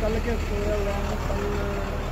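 A truck's diesel engine idling steadily, with a man's voice over it.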